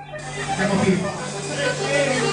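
A live band's music coming back in just after a brief stop, with voices over it and a steady low hum underneath.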